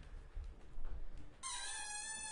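Low thuds of bare feet on a wooden floor, then about one and a half seconds in a cello starts a high bowed note that slides slightly down at its start and then holds steady, with a meow-like quality.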